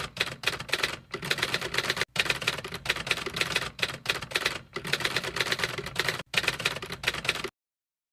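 Typing sound effect: rapid typewriter-like key clicks in runs separated by brief pauses, cutting off suddenly near the end.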